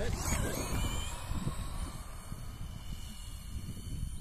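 Brushless-powered HSP Mongoose 2WD RC buggy setting off on asphalt: a burst of motor and tyre hiss in the first half-second that fades away over the next few seconds, over a steady low wind rumble on the microphone.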